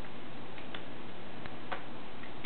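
Room tone: steady background hiss with a few faint, irregular clicks.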